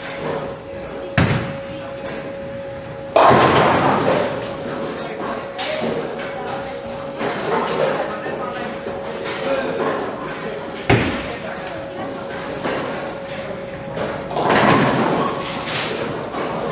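Ten-pin bowling: a bowling ball lands on the wooden lane with a thud about a second in, then crashes into the pins about three seconds in, the loudest sound here, the clatter dying away over a second or two. Another thud and a second burst of clatter follow later, over the chatter and a steady hum of the bowling alley.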